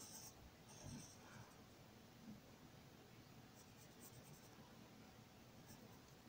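Faint scratching of a pencil drawing on paper, with a few short, soft strokes.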